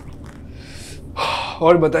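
Quiet room tone, then a short, audible breath from a man a little over a second in, just before a man starts speaking.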